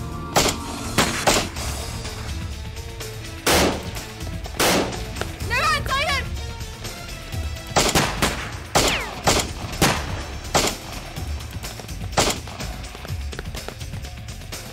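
Pistol gunfire in an exchange of shots: about a dozen single sharp shots at uneven intervals, some in quick pairs, over background music.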